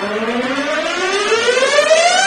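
A comedy sound effect: one smooth tone with overtones sliding steadily upward in pitch and growing louder, a rising build-up like a slide whistle.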